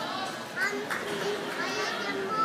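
Many children's voices talking and calling out over one another, a continuous busy chatter of a group of kids.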